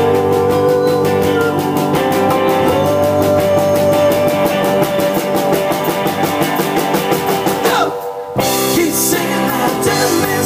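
Rock band playing live with electric guitars, drums and keyboard in an instrumental break, a lead line holding long, slightly bent notes. About eight seconds in a note slides down and the band cuts out for a moment, then comes straight back in.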